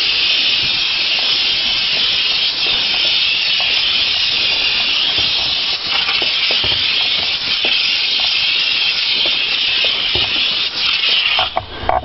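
Handheld steam cleaner jetting steam from its nozzle: a loud, steady hiss that stops just before the end, with a few light knocks.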